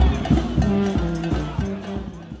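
Music with a rhythmic bass line, fading out.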